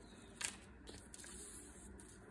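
Faint rustle of paper quilling strips being picked up and pulled apart by hand, with one short tap about half a second in.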